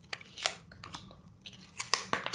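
Tarot cards being handled: a string of light clicks and soft rustles, scattered through the moment and bunched together near the end.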